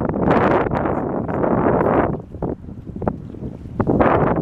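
Wind buffeting the microphone in gusts, a loud rumbling rush for the first two seconds that eases off and then returns near the end.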